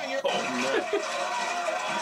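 Mostly speech: men's voices and chuckling over the audio of a wrestling video playing.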